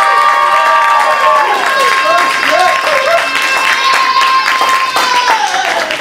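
Small audience clapping and cheering, with long high 'woo' whoops from several people. One whoop is held for about four seconds before falling away near the end.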